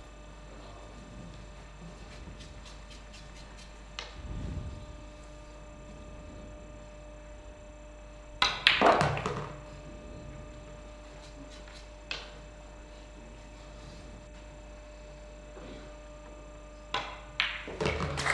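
Pool balls and cue clicking on a pool table over a faint steady hum. There is a low thud about four seconds in, a sharp click with a brief ringing decay about halfway through, and a few quick clicks near the end.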